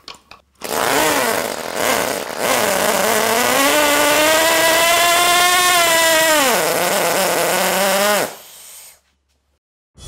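Small see-through Wankel rotary engine on nitro fuel, pull-started, catching unevenly and then running at high revs, its pitch climbing and holding. About six and a half seconds in the pitch sags, and the engine cuts off suddenly a couple of seconds later.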